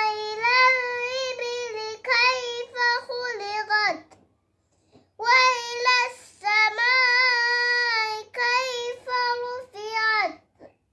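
A young girl chanting Qur'an recitation (tajweed), holding long melodic notes with ornamented turns between them. She breaks off for about a second near the middle, then resumes.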